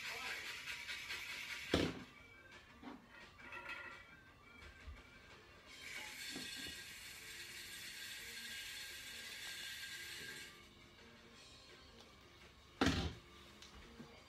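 Faint television audio, music and voices, with a steadier stretch of held music from about 6 to 10 seconds in. A knock sounds about 2 seconds in and another near the end.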